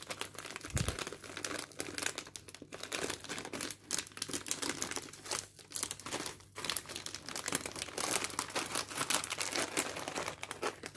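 Plastic snack bag of cracker sticks crinkling and crackling steadily as it is handled and pulled open, with one soft low thump about a second in.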